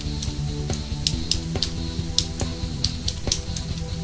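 Computer keyboard keys clicking irregularly, a few strokes a second, as a long password is typed at a terminal prompt, over steady background music.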